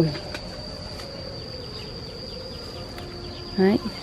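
Insects in an orchard: a steady, high-pitched insect drone, with a lower buzzing that fades away over the first couple of seconds.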